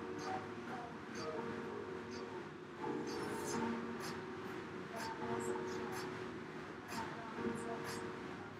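Rogue Echo air bike's fan whirring steadily as it is pedalled and pushed hard.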